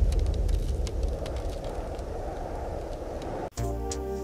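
A deep, low rumble fading away, with scattered faint crackles. About three and a half seconds in it cuts off and music with held notes begins.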